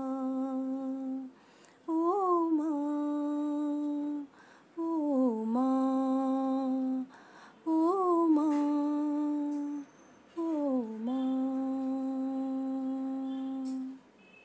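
A single unaccompanied voice humming the bhajan's melody without words: a held note ending about a second in, then four more long held notes, each opening with a short slide in pitch and separated by brief pauses.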